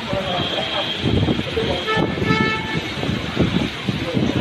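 Storm wind gusting with heavy rain in a continuous noisy rush that swells and falls. A car horn sounds briefly about two seconds in.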